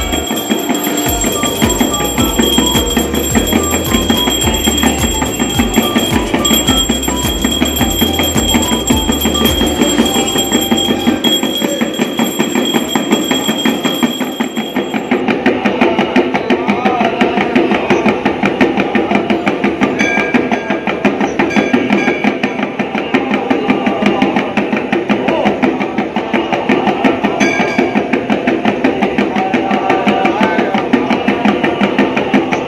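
Temple bells and percussion clanging in a rapid, unbroken beat for the aarti, with a steady high ringing that stops about halfway through.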